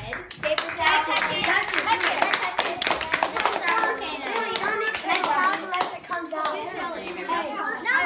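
Children talking and exclaiming over one another, with scattered hand claps, thickest in the first few seconds.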